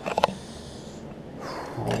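A brief nasal breath from a man just after the start, then low room noise, ending with a hesitant 'um'.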